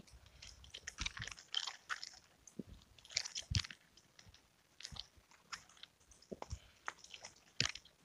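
Faint, irregular clicking and rattling of a nunchaku's chain as the sticks are swung in a figure-8 pattern, with a few soft knocks among the clicks.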